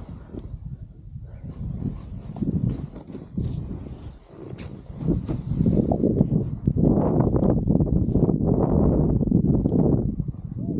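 Snowboard sliding and carving through soft fresh snow, a rough scraping rush mixed with wind on the microphone; uneven at first, it grows louder and steadier about halfway through.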